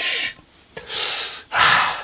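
A man breathing hard through an open mouth: a quick run of loud, breathy gasps in and out, a reaction to the burn of hot sauce.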